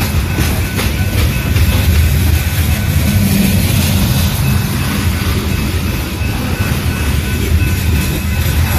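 Loaded coal train's hopper cars rolling past close by: a steady, loud low rumble of wheels on rail, with a faint steady tone above it.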